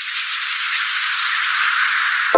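A steady, high hiss-like sound effect, like a shaker or whoosh, in the outro's music, with no pitched notes in it.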